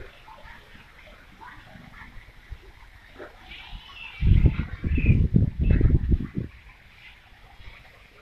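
Wind buffeting the phone's microphone in a run of loud, low rumbling gusts lasting about two seconds from halfway through, over faint high chirps from birds in the garden trees.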